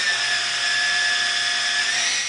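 Small electric motor in a handheld device running with a steady high whine, its pitch sagging slightly, starting abruptly just before and dying away soon after.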